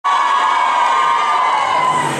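Audience screaming and cheering, loud, steady and high-pitched, as a dance group takes the stage.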